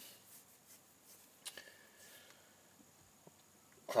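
Quiet pause: faint room tone inside a car cabin, with one soft click about a second and a half in.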